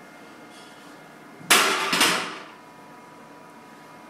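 Loaded barbell being racked on a bench press: two metal clanks about half a second apart as the bar and its plates hit the rack hooks, ringing briefly after the second.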